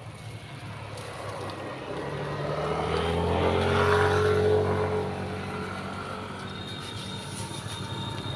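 A motor vehicle's engine going past. Its drone builds to its loudest about four seconds in, then fades.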